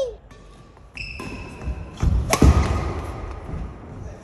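Badminton rally on a wooden gym floor: a short high shoe squeak about a second in, then one sharp crack of a racket striking the shuttlecock a little past halfway, echoing in the hall, followed by low thuds of footwork.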